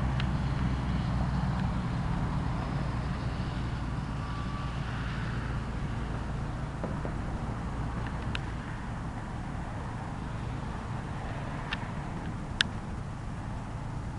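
Low, steady engine rumble from a distant motor vehicle, slowly fading away, with a few short sharp ticks in the second half.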